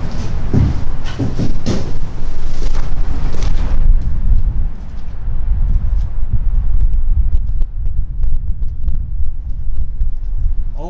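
Wind buffeting the camera microphone as a heavy, fluctuating low rumble. It is joined by knocks and rustling handling noise in the first four seconds.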